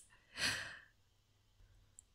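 A woman's single short, breathy sigh about half a second in, then near silence.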